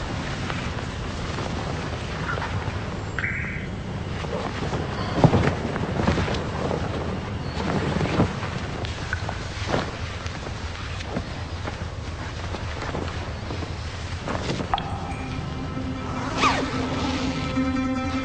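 Film soundtrack: a steady, noisy background with a few scattered knocks, then music with long held notes coming in about three quarters of the way through.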